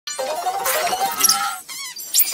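A cartoon woman's scream played back four times faster, so it comes out high-pitched and squeaky, over sped-up cartoon soundtrack audio. Near the end it breaks into a short wavering, warbling tone.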